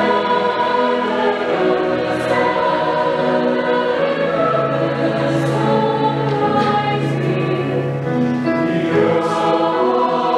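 Mixed choir singing a lullaby in long held chords, the voices changing pitch together every second or two.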